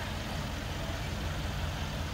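Steady low hum of the Mercedes-AMG GLE 63 S's 5.5-litre biturbo V8 idling.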